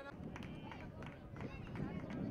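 Live sound from a grass football pitch: players' voices calling out, with several sharp knocks from feet and ball.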